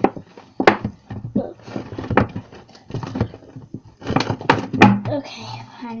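A clear plastic storage tub being handled, giving several sharp plastic knocks and thunks with scraping and rustling in between.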